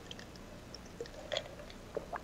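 A few faint short clicks over a low steady room hum: one about a second in, another a moment later, and one at the end.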